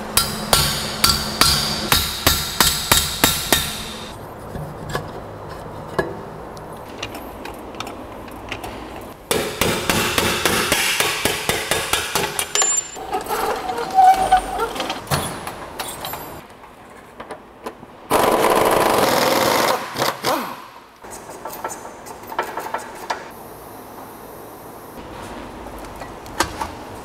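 Workshop tool noise from taking down a Mercedes-Benz SLK's rear subframe and suspension: a run of sharp metallic strikes, about three a second, over the first few seconds, then scattered clicks and knocks of tools on the suspension, and a louder steady noise for about two seconds past the middle.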